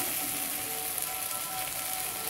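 Prawns and masala paste sizzling steadily in hot oil in a steel wok.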